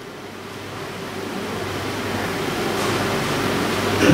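Steady hiss of background room noise with a faint low hum, growing gradually louder.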